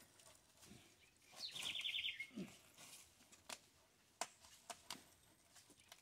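A bird calling once, a short rapid trill about a second and a half in, followed by a few light knocks.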